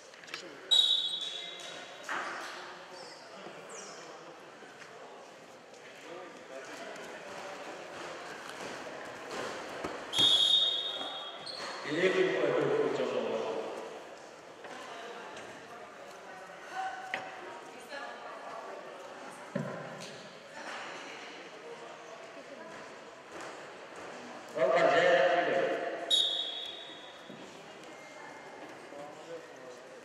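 Voices talking and calling out in a large echoing sports hall, with a short high whistle blast three times: about a second in, about ten seconds in, and near the end.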